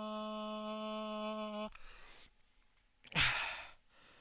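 A man's voice holding one long sung note at a steady pitch, which breaks off abruptly about one and a half seconds in as his breath runs out. A short breathy intake follows, then a loud exhaled sigh about three seconds in, falling in pitch.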